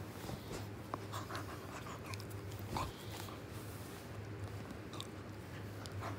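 Puppy play-biting and mouthing a hand: soft, scattered small clicks and wet mouthing noises, over a low steady hum.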